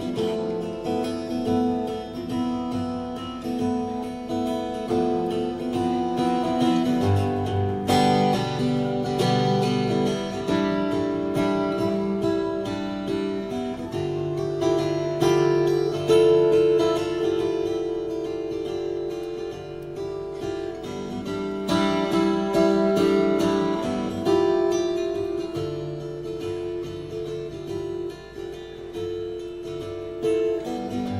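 Instrumental passage on acoustic guitar, with no singing: pitched notes ringing and changing every second or so.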